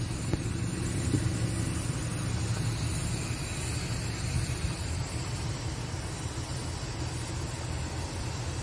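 A steady low rumble with a light hiss above it, unchanging throughout.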